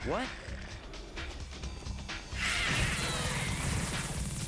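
Animated battle soundtrack: background music with a rumbling effects bed. About two and a half seconds in, a loud harsh noise with a wavering pitch comes in and lasts about two seconds.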